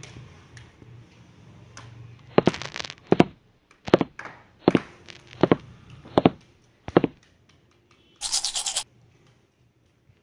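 Plastic dolls and toys handled on a tiled floor: a series of about seven sharp knocks and scrapes, then a brief scratchy rushing noise near the end.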